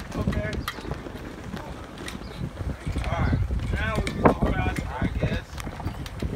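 Goats bleating, a few short wavering calls spread through the few seconds, over a steady low rumble of wind on the microphone.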